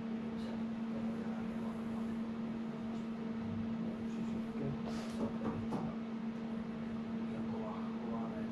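Steady low electrical hum from the lab's equipment, one tone with a fainter higher overtone, with a few faint clicks and rustles over it.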